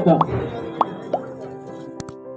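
Three short, rising 'pop' sound effects, about half a second apart, from an animated subscribe-button graphic, over faint steady background music.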